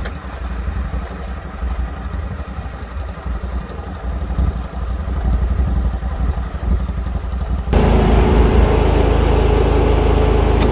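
Stand-on mower's small engine idling with a steady low drone. About three-quarters through it jumps abruptly to a louder, steadier engine drone with a hum in it.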